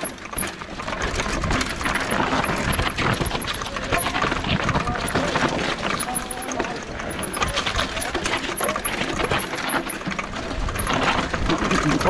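Mountain bike riding fast down a rocky dirt trail: the tyres crunch over loose stones and gravel, and the bike's frame, chain and components rattle and clatter continuously over the bumps.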